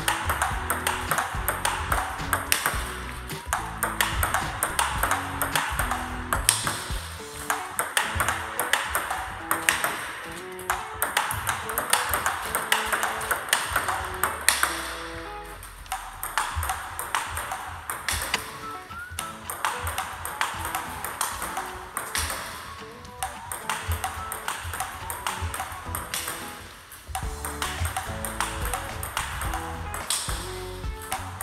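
Rapid multiball table tennis drill: hard plastic balls clicking off rubber paddles and bouncing on the table several times a second, with brief lulls, over background music.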